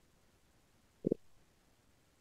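Near silence, broken about a second in by one short, low vocal sound from a man, like a brief "hm" or grunt.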